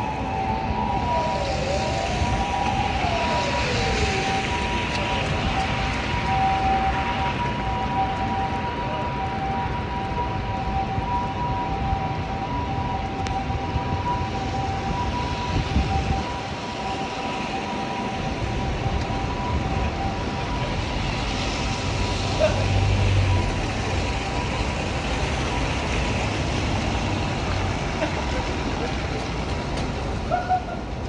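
Snowy city street at night: a steady, loud wash of traffic noise with vehicles passing on the slushy road. In the first few seconds a tone rises and falls a few times, and two steady high tones sound for roughly the first twelve seconds.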